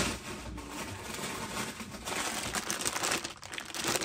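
Clear plastic bag of toy cars crinkling as it is handled, with a knock right at the start.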